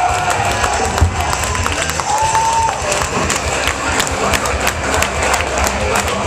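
A live rock band playing loud in a club, with the crowd cheering. The sound is a dense wash broken by many sharp hits.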